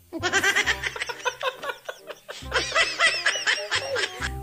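A man laughing hard in two long bouts of rapid, high-pitched bursts.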